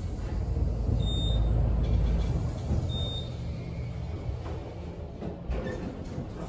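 Otis elevator car setting off upward, heard from inside the cab: a low rumble of the car in motion, loudest in the first two seconds or so and then easing to a steadier, quieter run.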